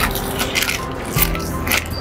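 Plastic carrier bag crinkling and rustling as it is rummaged through for a folded t-shirt, over steady background music.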